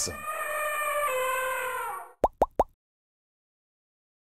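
Logo sound effect: a held tone, rich in overtones, for about two seconds, then three quick rising blips, then dead silence.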